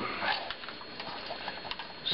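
A few faint clicks and knocks of objects being handled while searching for something, over a steady hiss with a thin high whine.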